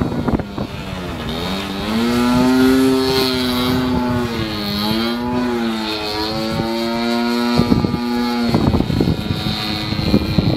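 Sbach radio-controlled aerobatic plane flying overhead: its motor and propeller drone with a pitch that dips, rises and wavers as it manoeuvres, from about a second in until near the end. Gusty wind noise on the microphone fills the start and the last second or so.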